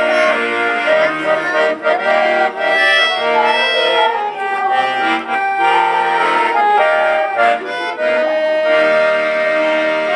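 Accordion duet on two piano accordions, a full-size one and a child's small one, playing a tune of held notes and chords over a bass line that changes about once a second.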